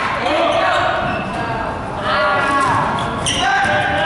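Basketball game in a gym: sneakers squeaking on the court and the ball bouncing, over the voices of players and spectators calling out.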